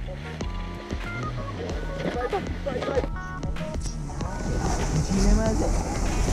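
Background music with indistinct voices over it.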